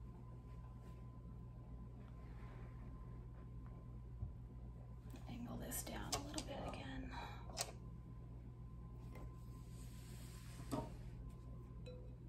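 Quiet room tone with a steady low hum. A few light clicks and soft handling knocks come about halfway through and again near the end, with faint murmured speech among them.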